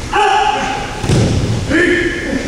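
Two short, steady-pitched shouts from aikido practitioners, with a heavy thud of a body hitting the mat between them, about a second in.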